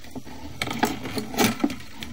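Sewer inspection camera head and push cable clinking and scraping against the pipe as the camera is pulled back out, a quick cluster of small knocks about half a second in, the loudest near the middle, over a steady low hum.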